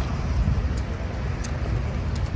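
Outdoor street noise: a steady low rumble like traffic or wind on the microphone, with light footsteps and the murmur of people walking.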